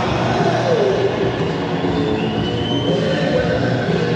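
Live rock band playing, heard through an audience recording, with a high sustained note sliding down and back up in pitch and another long note held over it from about halfway through.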